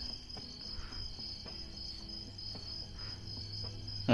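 Crickets chirping in a steady, high-pitched trill.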